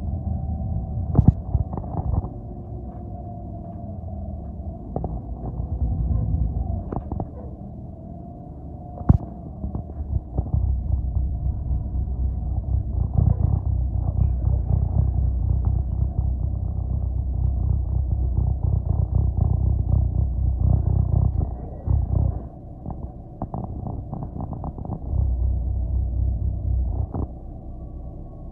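City bus heard from inside the cabin: a continuous low engine and road rumble with scattered rattles and knocks from the bus body. The rumble grows louder through the middle, dips briefly, then picks up again near the end.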